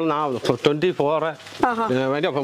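A man talking, his voice running with short pauses.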